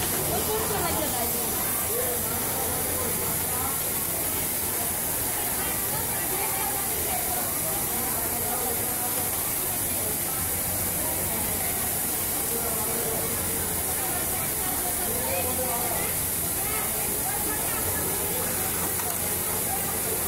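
Steady hiss and hum of a busy garment-factory sewing floor, with indistinct voices chattering in the background.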